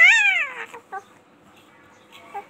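A baby's short, high-pitched cry that falls in pitch over about half a second, followed by two brief whimpers about a second in.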